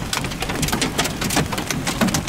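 Hail and rain pelting a vehicle, a dense, irregular patter of sharp impacts with no let-up.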